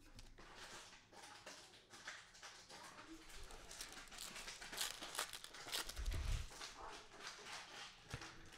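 Faint crinkling and rustling of a foil trading-card pack being torn open and its cards slid out by gloved hands, with a soft low thump about six seconds in.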